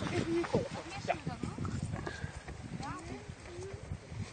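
Several people's voices talking and calling out at a distance, with a few small knocks or clicks.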